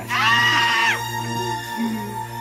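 A high, shrill cry lasting just under a second over a held chord of suspenseful music; the music carries on alone after the cry stops.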